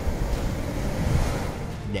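Ocean waves and wind: a steady rushing noise with a deep rumble, swelling in the middle and easing off near the end.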